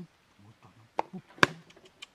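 Homemade trap of a wire motorcycle basket and a cardboard flap being tripped and snapping shut: two sharp knocks about half a second apart, the second louder, as the flap slaps down against the basket.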